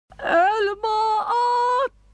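A woman's voice holding long wordless notes, three phrases of about half a second each at a high, nearly steady pitch, the last bending upward before it breaks off.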